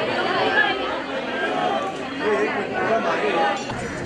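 Crowd chatter: many people talking at once, with overlapping voices and no single clear speaker.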